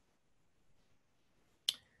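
Near silence, broken near the end by a single sharp computer-mouse click advancing a presentation slide.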